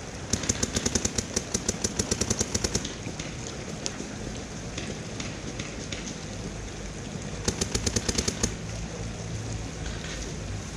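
Paintball marker firing rapid strings of shots, about eight a second: a string of about two and a half seconds at the start, then a shorter string of about a second near the end. A steady low rumble runs underneath.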